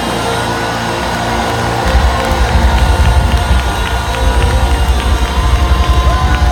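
Live band music on a loud concert PA, with a heavy drum-and-bass beat that kicks in about two seconds in, over a cheering crowd.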